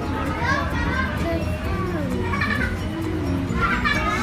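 Chatter of several visitors with children's voices among them, over background music and a steady low hum.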